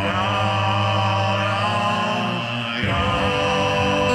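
Loop station beatbox performance: layered, looped vocal tones held as a steady drone-like chord with no beat, the harmony changing to a new chord a little under three seconds in.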